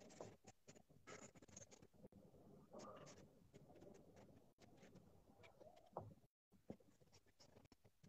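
Faint, irregular scratching of a charcoal stick on Bristol paper, made up of many short shading strokes, several a second.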